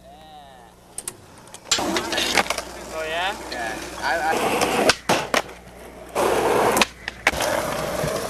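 Skateboard wheels rolling on rough asphalt, with several sharp clacks of the board striking the ground; voices talk over it at times. The rolling starts after a quiet second or so.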